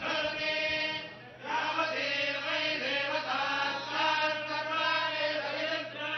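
Group of Hindu priests chanting mantras together in held, sung tones, with a brief pause for breath about a second in.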